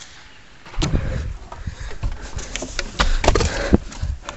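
Quiet at first, then from about a second in a run of irregular knocks, scrapes and low rumbling: handling noise and movement close to the microphone.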